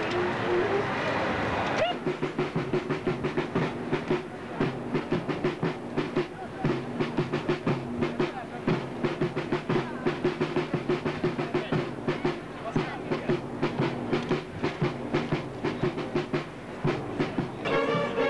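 Brass marching band playing a march with a fast, steady beat under held low brass notes, starting about two seconds in after a moment of voices.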